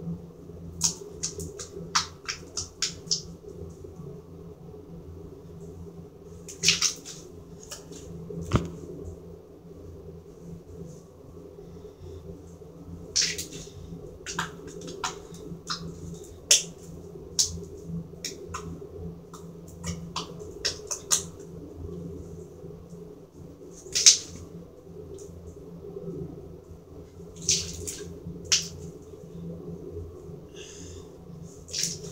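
Blue glitter slime being poked and squeezed by hand, making irregular sharp clicks and pops, a few much louder than the rest, over a steady low hum.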